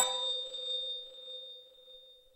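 Bell-like chime sound effect ringing out. A few high tones sound over a lower one, and all fade away over about two seconds.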